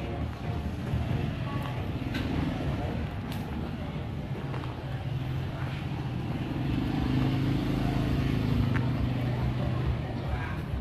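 A motor vehicle engine running steadily at low speed, a continuous low hum that grows a little louder in the second half.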